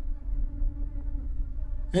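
A low, steady hum held on one note throughout, over a faint low rumble.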